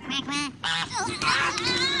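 Cartoon mallard duck quacking in quick bursts, together with a Minion's high-pitched chatter and laughter that builds toward the end.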